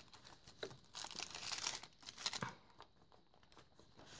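Faint paper rustling and crinkling as journal pages, cardstock tags and envelopes are handled and flipped, in short irregular bursts over the first two and a half seconds, then quieter.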